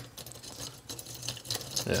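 Light, scattered clicking and rattling of loose plastic and metal parts on a cheap ZVS induction heater board as fingers press and wiggle its fan grilles, a sign of its loose, poorly assembled build.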